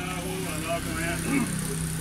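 People's voices talking over a steady low engine hum.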